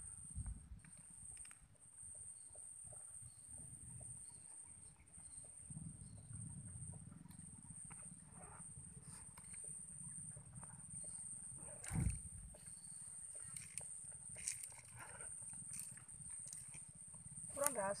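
Quiet outdoor ambience: a low wind rumble on the microphone with a steady high-pitched whine, scattered soft ticks, and one sharper knock about twelve seconds in.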